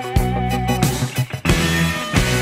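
Instrumental intro of a rock song, with guitars and bass playing sustained chords before the vocals come in. A brief drop about one and a half seconds in leads into a new chord.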